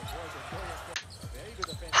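Faint game audio of a basketball being dribbled on a hardwood court, a few low bounces a second, under faint arena commentary, with one sharp click about halfway through.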